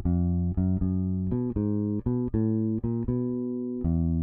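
Fender Precision Bass electric bass guitar playing a chromatic exercise: a steady run of plucked single notes moving by half steps, mostly about four notes a second, with one note held longer near the end.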